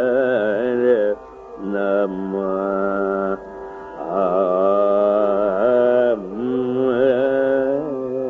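Carnatic classical music in raga Shubhapantuvarali: a single melodic line with constant sliding and oscillating ornaments (gamakas), in phrases that break off briefly about a second in, a little past three seconds and about six seconds in.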